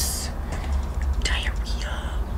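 A woman whispering: a hissed sound at the start and two short breathy syllables after about a second, without voice, over a steady low hum.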